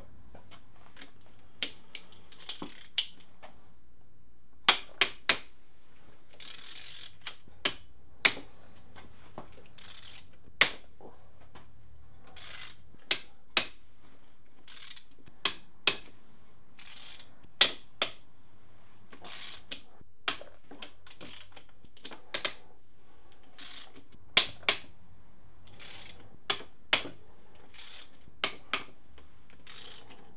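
Ratchet wrench clicking as tight crankcase bolts are undone: short, sharp metallic clicks, often in pairs, every second or so.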